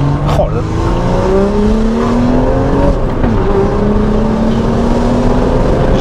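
Tuned BMW 135i turbocharged straight-six, running a stage 2 remap and aftermarket exhaust, heard from inside the cabin pulling hard under acceleration: the engine note climbs for about three seconds, dips at a manual gear change, then pulls up again.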